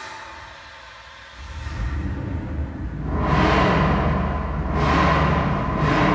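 Logo-sting sound design: music with rising whooshes over a low rumble, starting quietly and building into loud swells about every two seconds.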